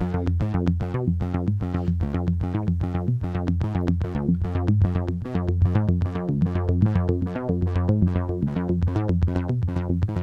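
Behringer Neutron analog synthesizer playing a rapid repeating sequence of short pitched notes over a steady low bass tone. Its filter cutoff is being modulated by an LFO sent from the CV Mod app.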